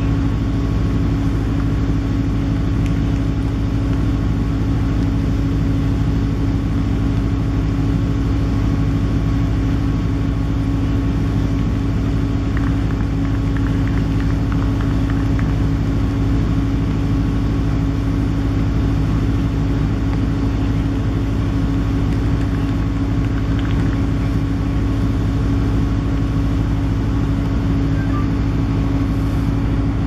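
A steady machine drone with a constant hum and a low rumble, unchanging in level or pitch.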